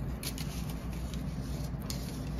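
Faint handling of wax paper and dried hydrangea florets by fingers: a few light crackles and ticks of paper over a low steady room hum.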